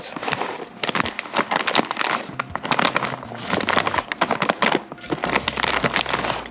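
Plastic bag of shredded cheese crinkling as it is squeezed and tipped to shake the cheese out: a dense, irregular run of crackles.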